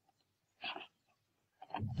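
Mostly silence, broken once a little over half a second in by a short, faint vocal sound lasting about a quarter of a second.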